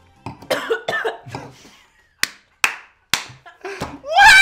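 A person coughing and spluttering after fizz from a sparkling drink caught in the throat: a spluttering run, then three sharp single coughs in the last two seconds.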